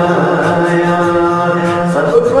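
A solo voice chanting Islamic recitation, holding one long, steady note.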